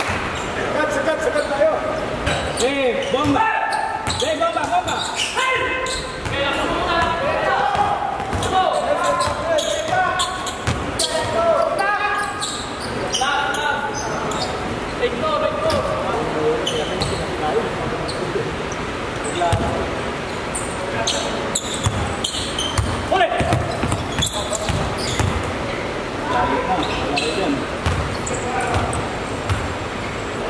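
Basketball bouncing repeatedly on an indoor court during a game, with players' voices calling out across a large hall.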